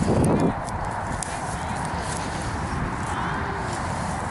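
A hand digger working the soil of a dug hole, with a few light knocks and scrapes over steady outdoor noise. A loud low rumble on the microphone fills the first half second.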